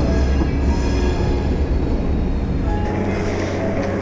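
Diesel switcher locomotive rumbling low and steady. About three seconds in it gives way to city street traffic.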